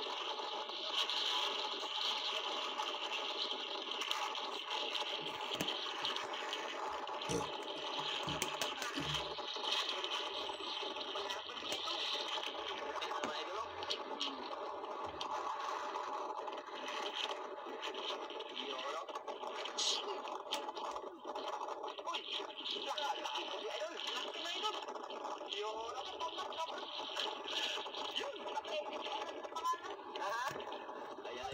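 Steady wind and sea noise on an open boat, with indistinct voices speaking underneath and a few light knocks.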